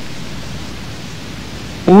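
Steady hiss of background noise in a pause of a man's narration, with his voice starting again near the end.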